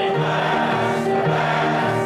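Audience singing the chorus of a pirate song together, over keyboard accompaniment.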